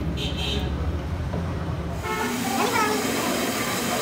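Metal lathe running with its chuck spinning, a steady low hum with a brief high whine near the start. About halfway the sound changes suddenly to a brighter workshop noise with a voice in the background.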